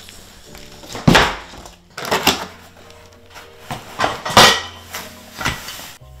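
Baby swing frame parts clattering as they are taken out of the box and handled, in four sharp knocks, the loudest about a second in and near the middle of the second half. Soft background music with held notes plays under it.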